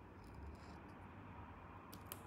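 Near silence: room tone with a faint low hum, and a couple of faint short clicks near the end.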